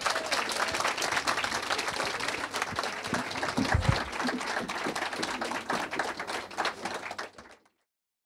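Audience applauding: a dense, steady patter of many hands clapping, with a dull low thump a little before halfway. The applause cuts off abruptly near the end.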